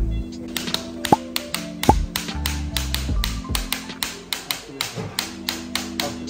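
Surgical mallet striking a metal instrument in quick, repeated taps, about four to five a second, as the hip implant is driven into the femur. Background music plays underneath.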